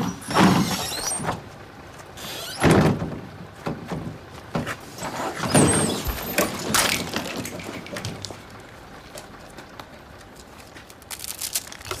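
Knocks and rattles of a tram's folding doors: several sharp thuds in the first seven seconds, then a quieter stretch of steady running noise.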